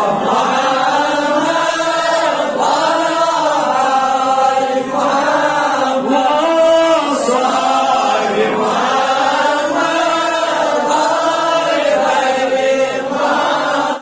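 A man's voice chanting a melodic religious recitation into a microphone, in long held phrases that rise and fall in pitch without a break.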